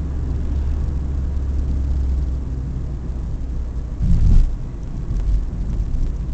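Car cabin noise while driving: a steady low engine and tyre rumble, with a short thump about four seconds in.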